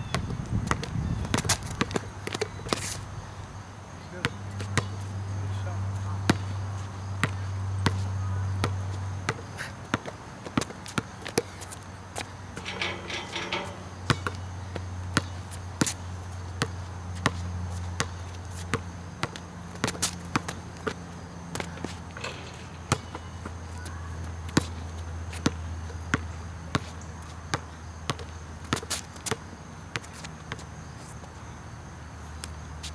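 Basketball dribbled hard on an outdoor asphalt court, sharp bounces coming in quick, uneven runs. A low hum rises and fades beneath the bounces.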